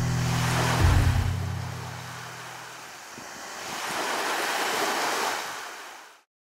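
Sea surf washing, dipping and swelling again, then cutting off abruptly at the end. A steady low hum fades out under it in the first two seconds.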